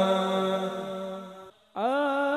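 The last long held note of one sholawat song fades out, and after a brief silence about a second and a half in, the next sholawat song begins with a long held chanted note that glides up into pitch.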